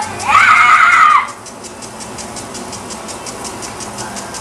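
A child's high-pitched squeal, lasting about a second and rising then falling, right at the start, then a faint steady hiss with fast, even ticking.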